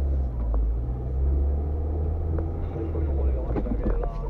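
A car driving, heard from inside its cabin: a steady low drone of engine and road noise, with a faint voice over it.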